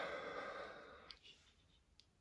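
A long breathy exhale, like a sigh, that fades out within about a second, followed by a couple of faint clicks.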